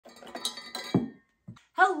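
Several copper mugs clinking and clattering together as they are handled, with the loudest knock about a second in and one soft knock shortly after. A woman says "Hello" at the end.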